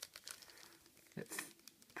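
Foil booster-pack wrappers crinkling faintly as they are handled and shuffled in the hands, with a slightly louder crinkle about a second and a half in.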